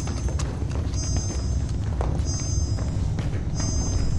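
Sound-design hum of a sci-fi flying craft: a steady low engine rumble, with a short high electronic tone repeating a little over a second apart and a couple of dull thumps.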